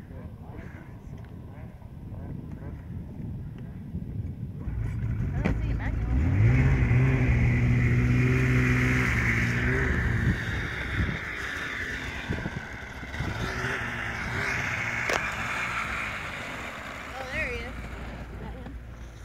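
Snowmobile engine running nearby: it comes in about four seconds in, revs up a couple of seconds later and holds a steady pitch at its loudest for several seconds, then eases back to a lower running sound.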